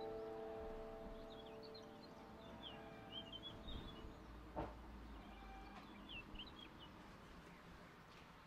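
The last held notes of a grand piano die away in the first two seconds. After that come faint, quick, high bird chirps in two short clusters, around three to four seconds in and again around six seconds, with one soft knock between them.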